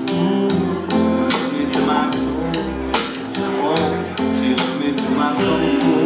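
Live acoustic blues band: an acoustic guitar strummed in a steady rhythm of about two strums a second over upright bass notes.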